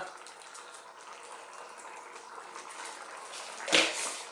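Potato and cauliflower curry simmering in a pan, a soft, steady bubbling, with a brief louder sound near the end.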